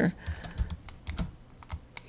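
Several sharp, irregularly spaced clicks from a computer mouse and keyboard.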